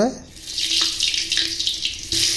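Onions dropped into hot oil in an earthen clay pot, sizzling. The hiss starts about half a second in and keeps going.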